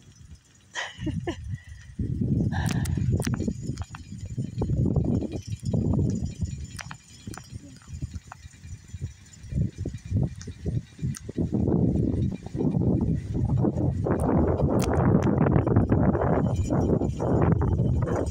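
Wind buffeting a phone microphone: a low rumble that comes and goes in gusts, growing stronger and fuller in the last few seconds.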